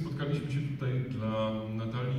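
A low voice chanting in long held notes.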